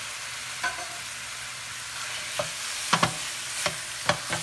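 Marinated chicken pieces and chopped vegetables sizzling in oil in a stainless steel pan, a steady hiss. A wooden spoon stirs them, knocking against the pan several times, mostly in the second half.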